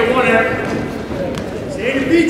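Men's voices shouting over crowd noise: a raised call at the start, a quieter stretch with a brief knock in the middle, and another voice starting near the end.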